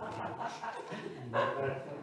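Indistinct talking: a person's voice speaking casually, the words not made out.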